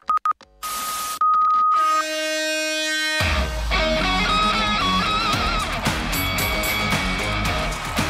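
Opening theme music of a sports show: a few quick electronic blips and a short hiss, then a held tone that swells into a chord, and about three seconds in a full-band theme tune with heavy bass and a melody kicks in.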